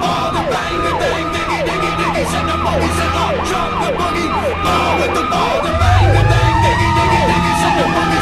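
Fire truck siren on a fast yelp, about two rising-and-falling sweeps a second, over the truck's low engine rumble. About six seconds in, a slower second siren tone winds up in pitch and then slowly falls, while a louder low rumble swells.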